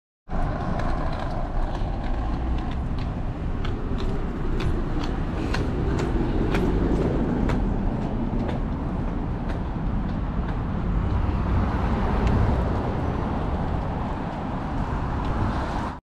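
City street ambience: a steady hum of traffic, with sharp footsteps on pavement about two a second through the first half.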